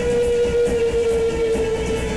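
Live rock band playing an instrumental passage: one long, steadily held note sits over drums, with a regular cymbal beat ticking about two to three times a second.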